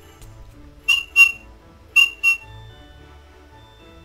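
Four short, high whistle toots in two quick pairs, about a second apart, loud over faint Christmas background music.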